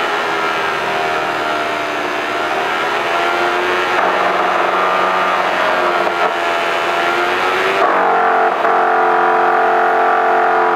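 A DC motor spinning a homemade QEG-replica generator, a steady machine whine made of several tones whose pitch drifts slowly. About eight seconds in the tones shift and the sound gets slightly louder.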